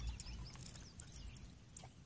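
Faint short, high bird chirps with a few light clicks over quiet background hiss.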